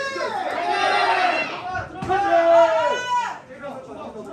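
Ringside spectators shouting encouragement at the fighters, several voices at once, then one long drawn-out shout that rises and falls about two seconds in and breaks off shortly after three seconds.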